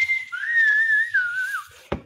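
A person whistling a short run of notes: one held high note, then lower notes that waver and dip. A brief click comes near the end.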